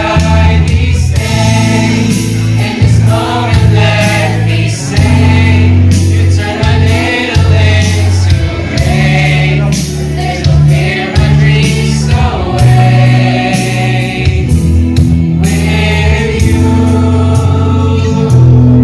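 A choir of children and adults singing a slow, gospel-style song over an instrumental accompaniment of sustained low chords and a steady beat.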